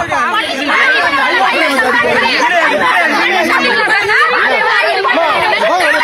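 Several people shouting and arguing at once, their voices overlapping.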